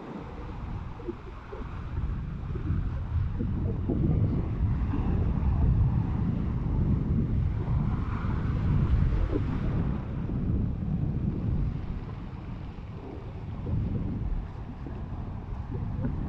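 Sea waves breaking and washing over dark shoreline rocks, with wind rumbling on the microphone. The surf swells louder from about three seconds in until around ten seconds, eases, then builds again near the end.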